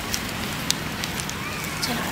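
Wood campfire crackling, with a few sharp pops over a steady hiss. Faint voices are heard in the background.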